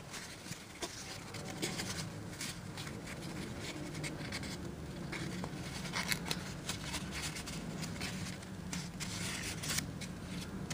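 Creased printer paper being pleated and pressed between fingers: soft rustling with sharper crackles of the folds, clustered about two seconds in and again around six seconds and near the end, over a low steady hum.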